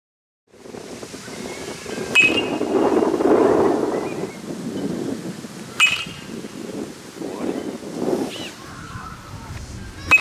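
Metal baseball bat striking pitched balls in batting practice: two sharp pings, each with a brief ring, about two and six seconds in, and a third right at the end. A low murmur runs between the hits.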